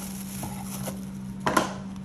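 Handling noise of a hard-shell sunglasses case and its plastic wrapping: light scattered clicks and rustles, with one louder knock about one and a half seconds in, over a steady low hum.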